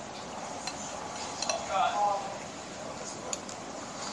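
A metal spoon scraping and clinking lightly against a ceramic bowl a few times while scooping food. A brief voice is heard in the background about halfway through.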